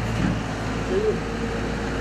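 A steady low hum like an engine running nearby, with a short voice sound just after the start and again about a second in.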